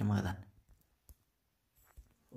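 A single spoken word, then two faint short clicks about a second apart: fingertip taps on a phone's touchscreen while working a video-editing app.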